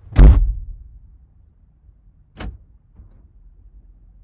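A car door slammed shut, heard from inside the cabin: one loud thud just after the start. A second, fainter knock follows about two seconds later.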